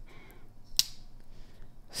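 Asher Spiro liner-lock folding knife being closed: one sharp metallic click a little under a second in as the blade snaps shut into the carbon fiber handle.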